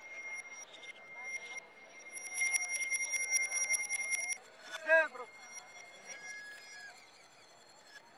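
A small handbell on a street vendor's cart ringing, shaken rapidly for about two seconds until it stops about four seconds in, its tone lingering faintly afterwards. A short, loud call that slides down in pitch comes about a second later.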